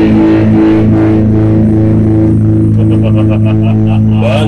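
Rock band's electric bass and guitar holding one long sustained chord that rings out at the end of a song, with only a few light drum strokes.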